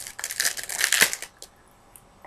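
Foil trading-card pack wrapper crinkling and tearing as a pack is torn open, a run of crackles for about the first second and a half.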